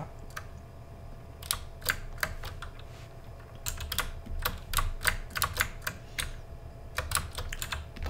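Computer keyboard keys being pressed: irregular single clicks and short quick runs of taps, starting about a second and a half in, over a faint low hum.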